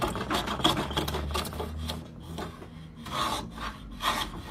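Metal hand plane with a freshly sharpened blade taking quick short strokes against the grain of a wooden block, shaving the wood; the strokes come in two runs with a quieter lull about halfway. It cuts smoothly, the sign of a keen edge.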